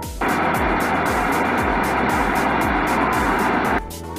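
Background music with a steady beat, overlaid by a loud, even rushing hiss that starts abruptly just after the start and cuts off just as abruptly shortly before the end.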